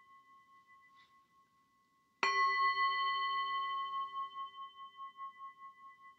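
Handheld metal singing bowl chimed: the ring of the previous strike fades away, then about two seconds in it is struck again and rings with a clear, steady pitch that slowly fades with a wavering pulse.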